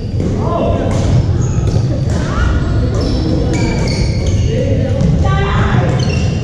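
Indoor pickleball rally: paddles knocking the plastic ball back and forth, with sneakers squeaking on the hardwood gym floor, in a large reverberant hall. The squeaks come as many short high chirps, one rising squeak near the end.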